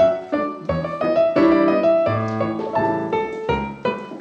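Piano accompaniment for ballet class exercises: chords with a bass note about once a second, in a steady rhythm.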